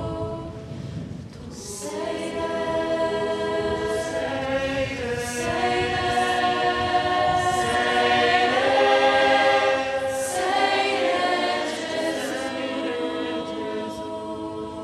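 Choir singing a slow Italian hymn in long held chords, dipping briefly about a second in and then swelling again.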